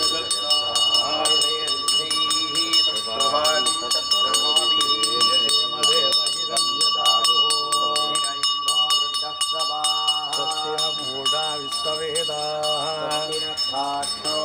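Men's voices chanting Sanskrit mantras, with a bell rung rapidly and without pause over the chant.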